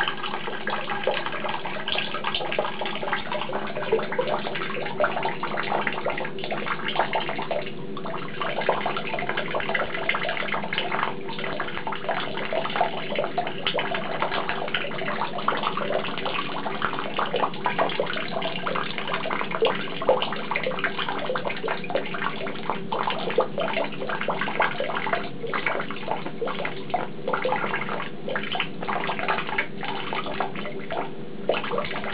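Tap water running in a steady stream and splashing into a basin, with a constant patter of small splashes.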